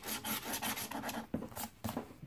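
A large coin scraping the coating off a scratch-off lottery ticket in quick repeated strokes, thinning to a few separate strokes near the end.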